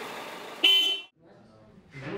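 A vehicle horn gives one short toot about half a second in, over street noise, then the sound drops away.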